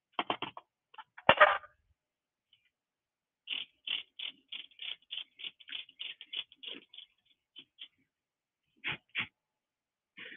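Handling of a micropipette and sample tubes: a quick, irregular run of small plastic clicks and taps, with one louder knock about a second in.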